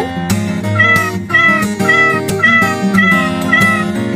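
A domestic cat meowing about six times in a row, short alike calls about half a second apart starting about a second in, over light guitar background music. The meows count off the six sides of a hexagon.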